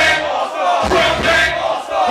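Live hip-hop performance: rappers shouting and chanting into microphones through the club PA, with crowd voices. The beat's bass drops out briefly twice.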